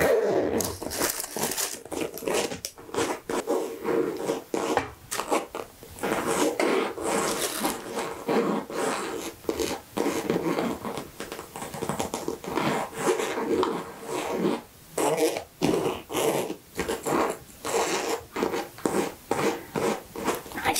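Long fingernails tapping and scratching on a fabric makeup bag, in rapid, uneven strokes with a few brief pauses.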